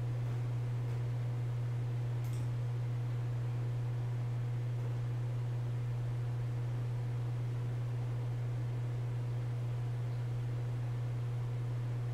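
Steady low hum with a faint hiss underneath, unchanging throughout.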